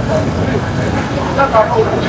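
Street traffic: the low, steady rumble of a car driving past on the road, with brief snatches of voices over it.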